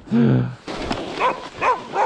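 A dog barking: short barks in quick succession, each about half a second apart, starting about a second in.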